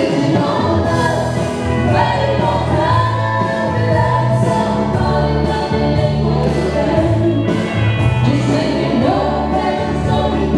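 A woman singing live into a handheld microphone through a PA, over a loud recorded backing track with a steady bass line and backing vocals.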